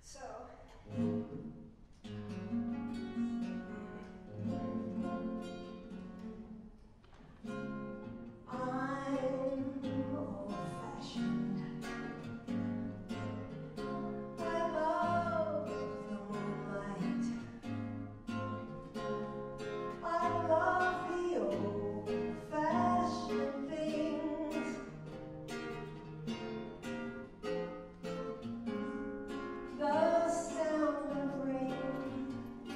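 A woman singing a song to her own nylon-string classical guitar accompaniment. The guitar plays a short introduction alone, and the voice comes in about eight seconds in and carries on over the plucked chords.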